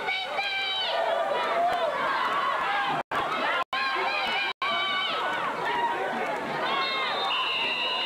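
Sideline crowd at a football game yelling and cheering during a play, many voices overlapping with no clear words. The sound cuts out completely three times for an instant, a few seconds in.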